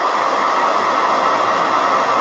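Handheld hair dryer running steadily, blowing over wet paint on a wooden door hanger to dry it.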